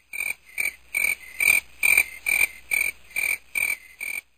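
Frog croaking in a steady rhythm, about two and a half croaks a second, each short and sharp, used as night ambience.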